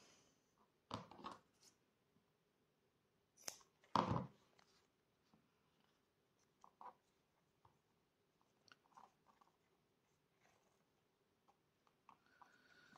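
Mostly near silence, broken by a few brief rustles and crinkles of a satin ribbon and a paper tag being handled and knotted. The loudest comes about four seconds in, and faint scattered ticks follow.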